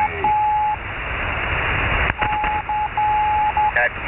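Shortwave receiver audio on 40-metre lower sideband: band-static hiss with a single steady beeping tone keyed on and off in long and short beeps, interfering over the channel. A brief voice is heard near the end.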